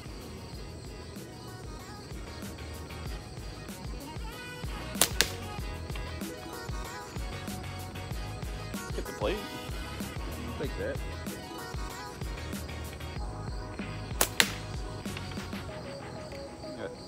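Two slingshot shots with 8 mm steel balls, one about five seconds in and one near the end. Each is a sharp snap followed a split second later by a second click: the bands releasing, then the ball striking the paper plate target.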